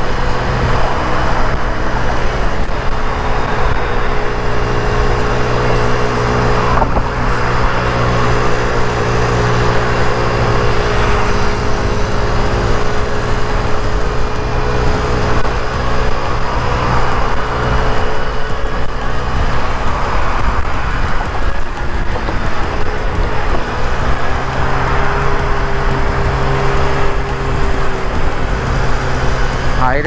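Mondial Wing 50cc scooter engine running steadily at a cruise of about 50 km/h, heard from the rider's seat, with a steady rush of wind and road noise over it.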